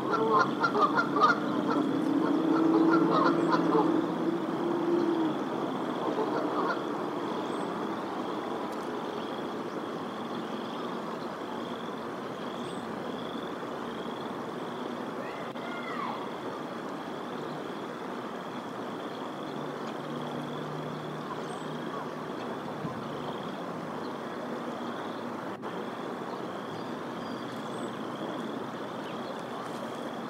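Canada goose honking in a quick series during the first five seconds, then a single call about halfway through. A steady faint high trill runs underneath.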